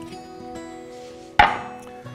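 A single sharp knock on a wooden cutting board about a second and a half in, over soft background guitar music.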